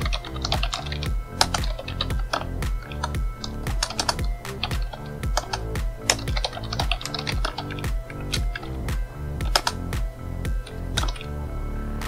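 Computer keyboard typing in quick runs of key clicks, over background music with a steady beat.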